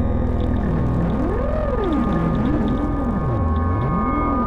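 Contemporary chamber music for harp, double bass, percussion and electronics: a steady low drone and held tones, under a pitch that keeps sliding up and down in arcs of about a second each.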